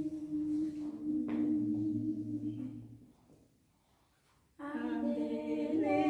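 A small unaccompanied family choir of two women and a man holding a sung note, with a second voice and then a low male voice joining in. The voices break off about three seconds in, and after a second and a half of silence come back in together, singing in harmony in Oshiwambo.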